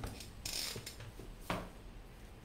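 Small handling noises at a desk: a brief high hiss about half a second in, then a single sharp click about one and a half seconds in.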